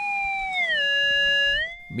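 Handheld metal detector's electronic tone: a steady pitched beep that slides down in pitch about half a second in, holds, then slides back up and cuts off near the end.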